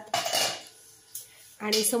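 Small brass puja items clinking and rattling in a copper bowl as a toddler handles them: a short clatter at the start and a second sharp clink about a second later.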